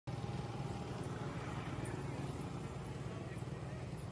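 Street noise: a motor scooter engine running amid the low din of traffic, with people's voices mixed in.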